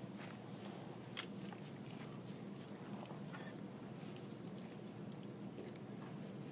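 A few faint, sharp snips of dissecting scissors cutting through a pig's sternum and rib cage, over a steady low room hum.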